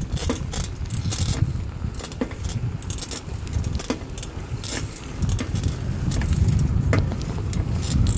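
Street cruiser bicycle being ridden on pavement: a steady low rumble from the ride, with frequent light rattles and clicks from the bike's chain and parts.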